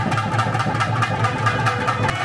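Temple festival drums beaten in a fast, even roll, over a steady low hum.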